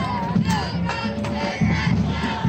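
Marching band in the stands: drums beating about twice a second, with many voices shouting over them.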